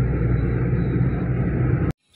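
Steady rumble of a vehicle running, heard from inside the cabin; it cuts off suddenly near the end.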